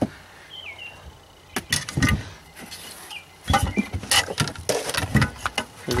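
Car-audio parts and packaging being handled and shifted in a car trunk: irregular knocks, clatters and rustles, a couple about a second and a half in and a busier run in the second half. Faint bird chirps behind.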